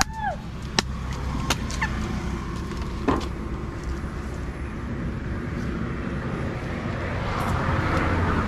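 A machete chopping open a green coconut: a handful of sharp, separate chops in the first three seconds. A steady low rumble of road traffic runs under it and swells near the end.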